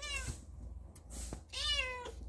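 Long-haired kitten meowing twice: a short call at the start and a longer, louder meow near the end.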